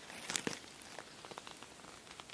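Handling noise as an open hardback picture book is lifted and held up. There is a short burst of rustling and crackling about half a second in, then scattered light ticks.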